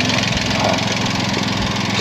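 Suzuki Alto Works' R06A 660 cc three-cylinder turbo engine idling steadily. It is tuned with a Monster Sport ECU and a replaced turbocharger.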